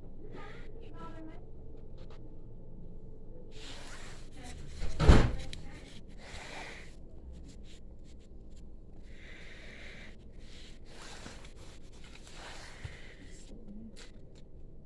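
A single loud thump about five seconds in, over low room sound with a few softer noisy stretches.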